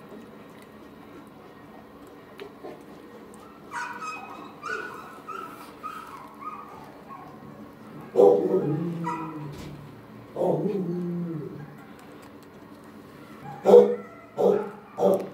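Dog vocalising: a string of short, high whimpers, then two longer, louder, lower sounds that fall in pitch, and a sharp bark near the end.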